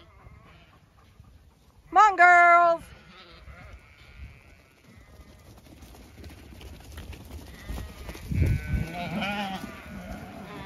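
Zwartbles hoggets bleating: one loud bleat about two seconds in, lasting under a second, then more bleats near the end as the flock comes up. A couple of low thumps sound just before the later bleats.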